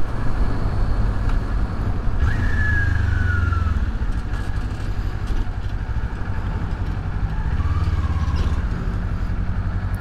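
Kawasaki Z400 parallel-twin engine running at road speed under wind rush. The engine note swells briefly twice, about two and eight seconds in, as the bike is downshifted while slowing in traffic. A short falling whine comes about two seconds in.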